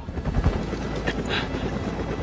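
Steady helicopter rotor and engine noise, with the low chop of the blades.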